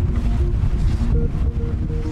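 Heavy wind buffeting the microphone over choppy lake water, with electronic background music coming in and growing stronger about a second in.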